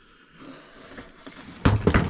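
Faint rustling and scraping from handling a hard carrying case as it is lowered onto a table, then a man's voice starting near the end.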